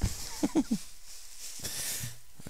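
A man's short laugh, then bubble wrap rustling and crinkling as it is handled near the end.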